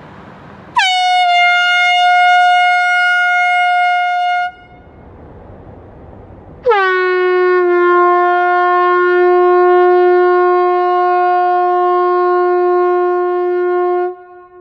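Handheld compressed-air horn sounding two long blasts while carried past at walking pace. The first is higher and lasts about three and a half seconds; after a short gap a second, lower blast holds for about seven seconds. The pitch change heard as it passes is small.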